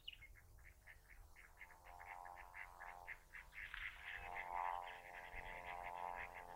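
Faint frog chorus: a rapid train of short calls, about six a second, that grows louder partway through, over a faint steady hum.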